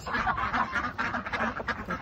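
A group of ducks quacking over and over, many short harsh calls overlapping.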